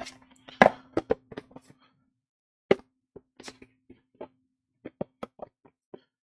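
Oracle cards and their box handled on a wooden table: a scattering of short taps and clicks, the loudest about half a second in and near three seconds, over a faint steady hum.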